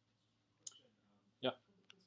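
A few faint clicks, with one sharper, louder click about one and a half seconds in, over quiet room tone.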